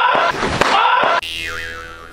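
Upbeat background music that cuts off abruptly a little over a second in, replaced by a cartoon-style 'boing' sound effect with a wobbling pitch that fades away.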